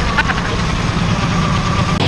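Car engine idling: a steady low rumble.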